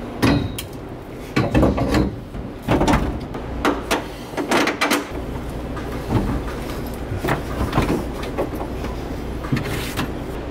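A bucket seat being set down into a stripped car's floor and shifted into place, with a string of knocks and scrapes against its mounts and the roll cage, then creaks and bumps as someone climbs in and settles into it. A steady low hum runs under the second half.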